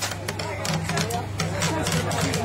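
Small toy drum struck with drumsticks by a child trying it out: an irregular string of light taps, with voices in the background.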